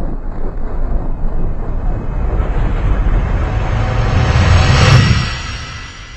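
A whooshing sound effect with a deep low rumble that swells steadily to a peak about five seconds in, then fades away.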